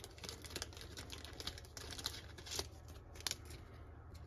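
Faint rustling and light ticks of hands handling a trading card and a thin clear plastic card sleeve, with a couple of sharper clicks in the second half.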